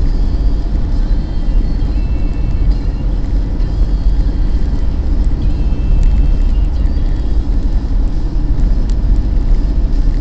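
Steady low rumble of engine and road noise inside a moving car's cabin.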